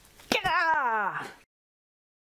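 A single drawn-out vocal sound, wavering and falling in pitch, lasting about a second. The sound then cuts off abruptly.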